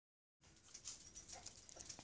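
Near silence: faint background ambience with a few soft, scattered noises.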